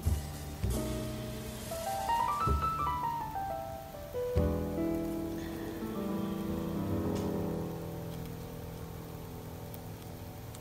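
Soft background music: a run of single notes climbs and then falls, followed by held chords.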